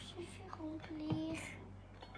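A child's voice, faint, holding two short tones near the middle.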